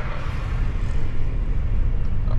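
Steady low rumble of a moving car heard from inside its cabin: engine and road noise while driving.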